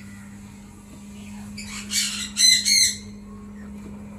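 Sun conures squawking: a harsh, rasping call about two seconds in, then two or three loud, short squawks straight after, over a steady low hum.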